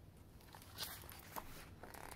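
Faint rustling of a picture book's paper pages being handled and turned, a few brief soft rustles from about a second in, over a low steady room hum.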